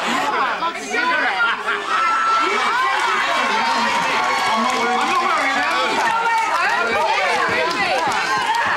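Several people talking and shouting over one another: lively, overlapping chatter at a steady level throughout.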